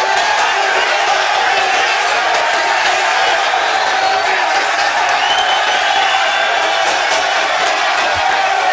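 Large crowd cheering and shouting in a steady wall of voices, with whoops above it: an eruption at a punchline.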